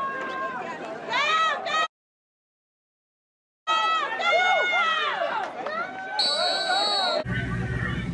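People shouting and yelling excitedly during American football play. The yelling breaks off into about two seconds of silence, then resumes. Near the end a single shrill whistle blast lasts about a second and is followed by a low steady hum.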